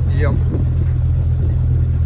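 Open-topped off-road vehicle driving along a dirt track, heard from the driver's seat: a steady low rumble of engine and road noise.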